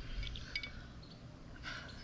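A few faint clinks and a little liquid movement from a glass jar of bleach being handled with a brush in it, in the first half, over a low wind rumble on the microphone.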